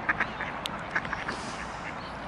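Mallard ducks quacking: a few short quacks near the start and again about a second in, over steady outdoor background noise.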